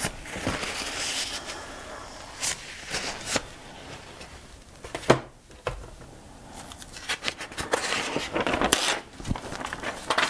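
Handling sounds on a tabletop art journal: a cloth wiping, paper and a stiff board rustling, with one sharp tap about five seconds in. Near the end there is denser rustling as a flat board is pressed down over a stencil on the paper.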